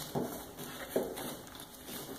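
Soft handling clicks of an electrical wiring connector being worked on a workbench: two light knocks about a second apart.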